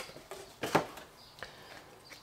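Handling noise from a 3D-printer filament spool in its plastic vacuum bag being lifted out of its cardboard box: a few short rustles, the sharpest about three quarters of a second in.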